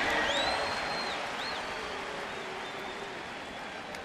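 Ballpark crowd applauding, the noise dying away, with a high whistle in the first second that glides up and holds, then a short second one.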